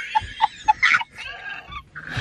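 A woman laughing in short, high-pitched bursts, about four a second, fading near the end.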